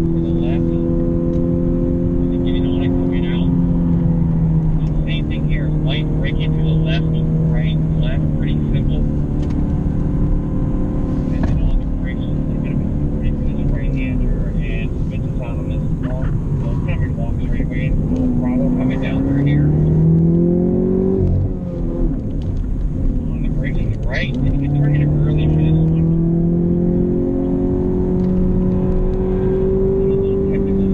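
2019 Chevrolet Camaro's 2.0-litre turbocharged four-cylinder engine heard from inside the cabin while lapping a track. The engine note holds steady and then eases off. About two-thirds of the way through it revs up steeply and falls away sharply, then climbs again toward the end.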